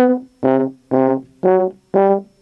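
Brass instruments playing a tune in short, separate notes, about two a second, with the pitch stepping from note to note.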